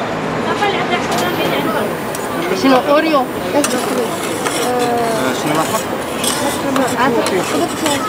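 Metal spatulas clinking and scraping on a steel rolled-ice-cream cold plate as ice cream is picked at and chopped, with a few sharp clinks scattered through. Background chatter of people talking runs underneath.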